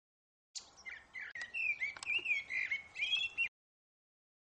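Birds chirping over faint background noise: many short chirps that glide up and down. They start about half a second in and cut off suddenly near the end.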